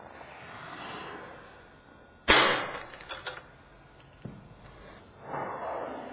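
Breathy mouth noises swell and fade twice. About two seconds in there is a sharp, loud thump, followed by a few smaller knocks.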